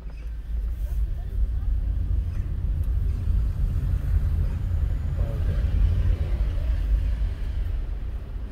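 Low rumble of a car driving, heard from inside the cabin, growing louder about a second in as it moves off and picks up speed, and easing off again near the end as it slows.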